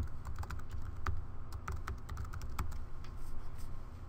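Typing on a computer keyboard: a quick run of keystrokes through the first two and a half seconds, thinning out after that, over a steady low hum.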